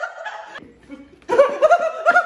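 Women laughing: a voice trails off early, then a burst of short, rapid repeated laughs starts about a second and a half in.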